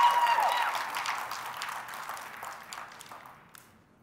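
Audience applauding, with a few voices calling out at the start, fading away steadily to near silence just before the end.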